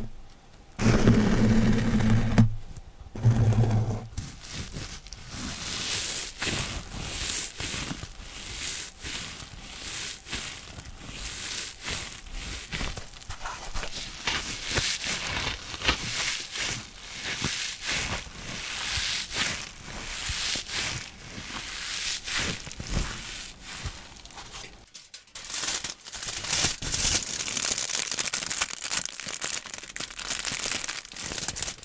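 Scouring sponge scraped and rubbed close to a Blue Yeti microphone, in dense scratchy strokes, with a low buzzing scrape in the first few seconds. After a brief pause near the end, crinkly wrapping is crumpled against the mic.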